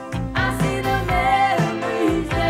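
Pop song: a woman singing a held note over a band with a steady drum beat.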